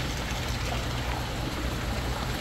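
Steady stream of water pouring from a PVC outlet pipe into a five-gallon bucket. The flow is strong, the sign of a freshly cleaned bead filter that is no longer clogged.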